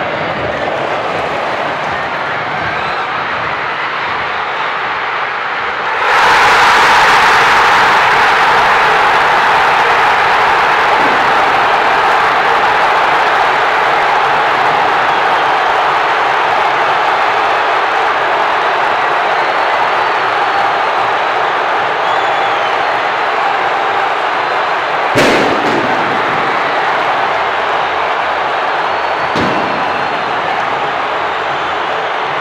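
Football stadium crowd noise that rises suddenly about six seconds in to loud, sustained cheering for a home goal, easing only slowly afterwards. A single sharp bang cuts through the cheering near the end.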